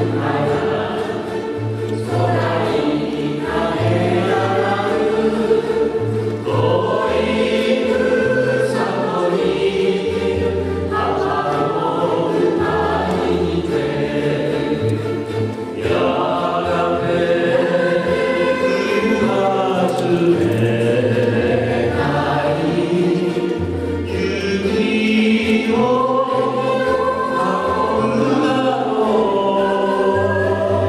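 Live ukulele ensemble music: many ukuleles playing together under a sung melody, over a stepping bass line.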